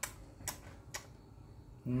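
Light, sharp clicks at an even pace of about two a second, like a ticking clock, then a person humming an appreciative 'mmm' near the end.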